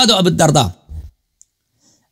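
A man's voice speaking, stopping less than a second in, followed by a pause with a single brief, faint click.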